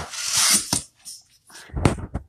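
Rustling of raffia packing shred and a cloth apron being handled in a cardboard box, for under a second, followed near the end by a dull knock and a few light clicks.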